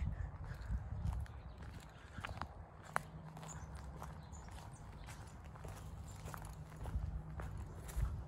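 Footsteps walking through long grass and overgrown brush, with scattered light clicks and snaps, the sharpest about three seconds in, over a low rumble.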